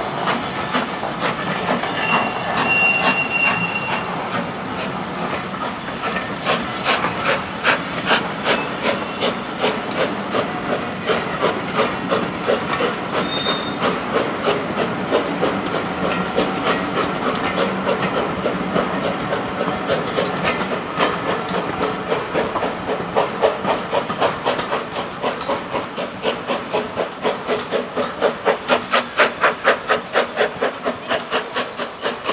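A steam locomotive pulling a train away, with steady, regular exhaust beats and a hiss of steam over the rumble and clatter of the carriages on the rails. The beats become more distinct near the end.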